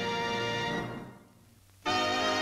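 Orchestral studio-logo fanfare ending on a held chord that fades out, a brief pause, then the main title music strikes up suddenly near the end.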